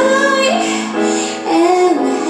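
A woman singing live into a handheld microphone: she holds a note, then starts a new phrase about one and a half seconds in.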